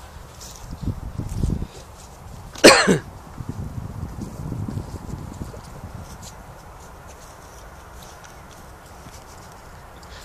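Low, irregular rumbling on the microphone, with one short, loud voice-like call a little under three seconds in.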